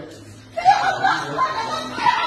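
People's voices, talking and chuckling, starting about half a second in.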